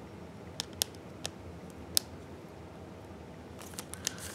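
A handful of short, sharp clicks and crinkles from a thin clear plastic card sleeve being handled as a trading card is slid into it. The clicks are clustered in the first couple of seconds, with a few more near the end.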